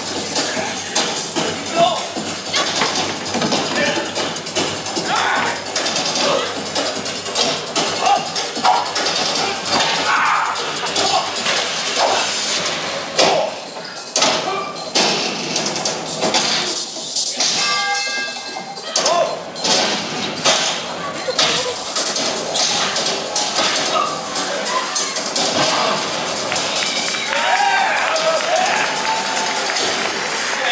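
Staged stunt fight set to loud dramatic music, with a rapid, irregular series of hits and body-fall thuds throughout.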